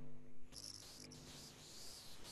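Faint high-pitched cricket chirping over a quiet hiss, picked up through a video-call microphone, with brief chirps about half a second in and again near the end.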